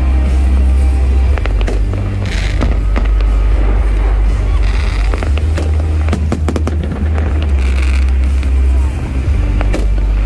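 Fireworks display going off: a run of sharp bangs and crackles, thickest about two seconds in and again around six seconds, over a constant heavy low rumble.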